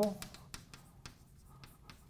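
Chalk writing on a blackboard: a string of short, irregular taps and scratches as a word is written out.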